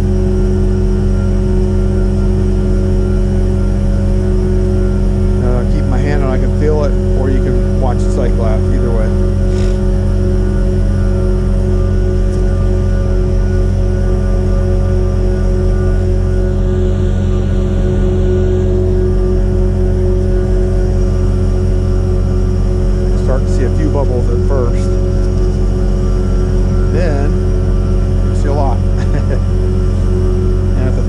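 Truck engine and vacuum pump running at a steady drone with a constant hum, pressurising the vac tank trailer to push production water out through the offload hoses.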